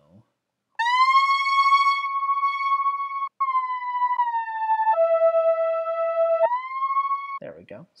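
Logic ES2 software synthesizer playing a single-note lead line with glide through a steep 24 dB-per-octave low-pass filter, bright with many overtones. After a slide up into a held high note it dips, drops to a lower note about five seconds in, and slides back up near the end.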